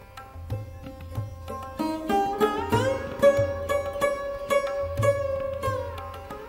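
Sarod playing a Hindustani raga with tabla accompaniment. Quick plucked strokes give way, about two seconds in, to notes that slide upward into a long held pitch that is struck again and again. Low tabla bass-drum strokes sound underneath.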